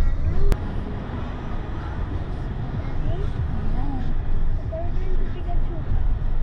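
Low, steady road and engine rumble heard from inside a moving car's cabin, with quiet talking underneath. There is one sharp click about half a second in.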